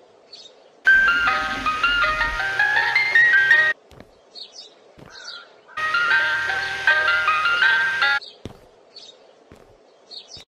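Ice cream truck jingle: a chiming tune played in two phrases, the first about three seconds long and the second a little shorter, with a pause between them.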